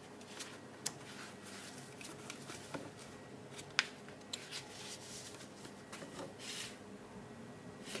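Pages of a paper instruction booklet being turned by hand: quiet rustling and page flips, with a few sharp ticks of paper, the loudest just before four seconds in.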